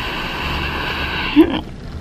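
A woman's long breath out, steady and breathy, as her nostril is pierced with a needle. About a second and a half in, it ends in a brief voiced sound.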